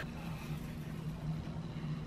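A soda-gelatin layer being worked loose by hand from a plastic mould, a faint, even wet sound. A steady low hum sits beneath it.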